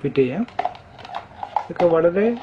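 Several light plastic clicks and knocks, about five in a little over a second, as a table fan's white plastic rear motor housing is handled and fitted over the motor.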